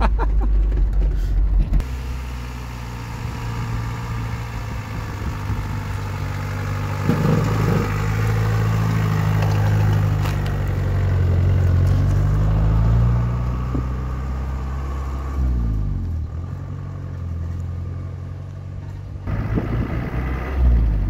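Engine of a custom-built off-road FSO Polonez 4x4 running as the car crawls over rough ground, its note rising and falling with the throttle. There is some brief clatter near the middle.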